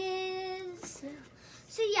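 A young girl's voice holding one long, level note for most of a second, like a hummed or sung "hmm", then a short sound and the start of speech near the end.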